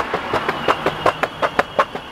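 Boosted electric skateboard rolling on the sidewalk, its wheels making a racket of rapid, evenly spaced clicks, about six a second, over a thin steady whine. One of its drive belts is not tight enough.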